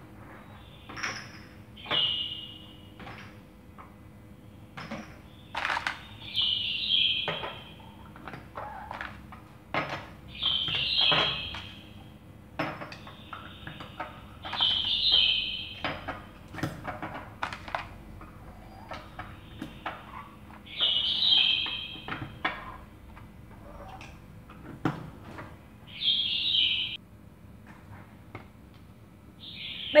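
Plastic lids being pressed onto small glass yogurt jars, each giving a short high squeak about every four to five seconds. Between the squeaks, the glass jars clink and knock as they are handled and set down.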